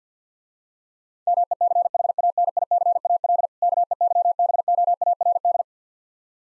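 Morse code: a single steady beep keyed on and off in rapid dots and dashes at 50 words per minute, starting about a second in, with one short break midway between the two words. It spells MECHANICAL KEYBOARD.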